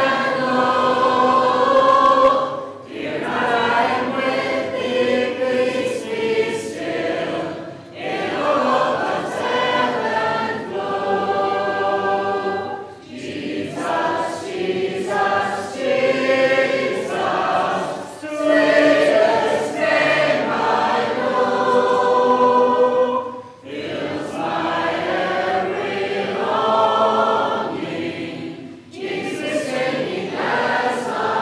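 Church congregation singing a hymn a cappella, without instruments, in phrases of about five seconds separated by short pauses for breath.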